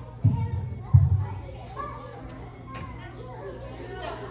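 Young children chattering and playing in a large hall. Two dull, low thumps come within the first second and a half.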